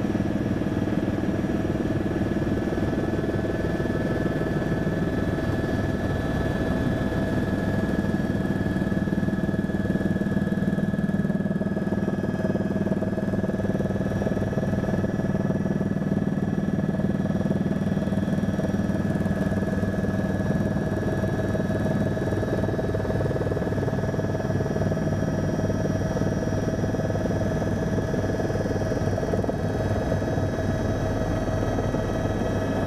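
Helicopter turbine and rotor running steadily, heard from inside the cabin, as it descends and sets down. There is a constant whine of several steady tones over a dense rumble, without pauses.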